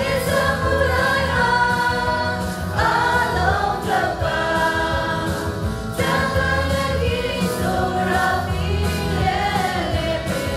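A choir singing a Christian song over a steady low accompaniment, with an abrupt break in the music about six seconds in.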